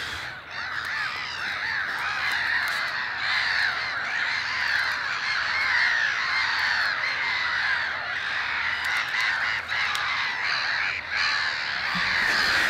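A large flock of birds calling together: a dense, steady chorus of many overlapping calls with no single bird standing out.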